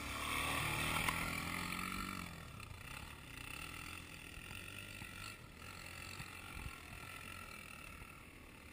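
Dirt bike's engine running close by, loudest about a second in, its pitch dropping off around two seconds in, then fainter and steadier as a motorcycle climbs a distant slope.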